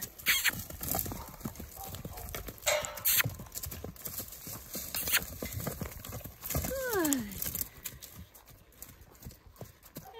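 Horse's hooves cantering on packed dirt, a run of uneven thuds and knocks as the horse circles the pen, with one falling call about seven seconds in.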